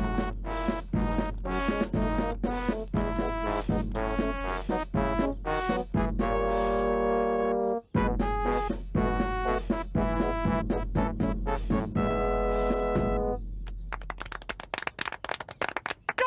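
Brass band music: brass chords over a steady bass-drum beat, with a short break about eight seconds in. The tune ends on a held chord a couple of seconds before the end and gives way to a crowd clapping.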